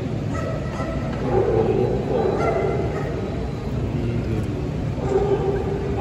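A dog barking in the ring, in one bout about a second in and another near the end, over the steady crowd noise of a large indoor hall.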